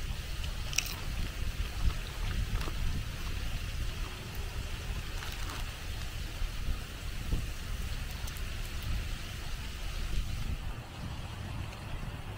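Wind buffeting the microphone with a steady low rumble, under a few scattered crunches of a tortilla chip being chewed.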